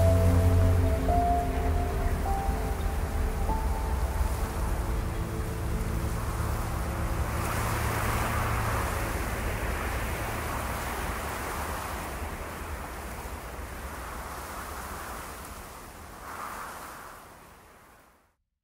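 Soundtrack of a film trailer's ending: sustained music notes fade over the first few seconds into a wind-like rushing noise that swells in the middle, then dies away at the very end.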